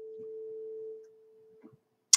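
A faint, steady pure tone with a weaker, lower tone beside it, fading out about a second in and leaving near silence.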